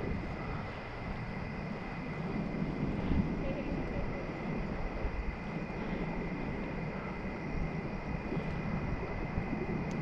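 Wind buffeting a bicycle-mounted action camera's microphone while riding, with a low fluttering rumble and a faint steady high whine.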